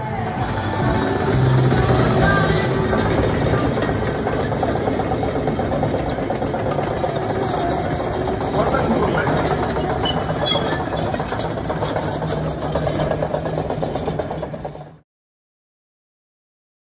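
Caterpillar tracked excavator running and working its boom and bucket, a steady engine hum under the hydraulics, mixed with voices and music.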